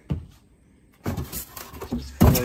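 A hard plastic engine cover handled close to the microphone: one knock at the start, then a quick run of rubbing and scraping about a second in.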